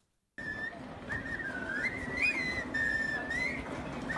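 A group of people whistling a catchy tune together, one melody line that starts about a third of a second in, over the background noise of a busy shopping street.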